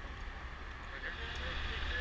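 A faint, steady low rumble with a light hiss over it.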